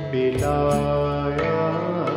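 Ghazal music: held melodic notes over a steady low bass, with a few light percussive strokes.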